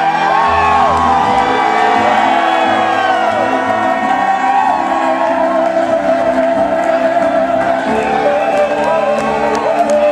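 Live music with held notes and a low bass part, with a crowd whooping and cheering over it.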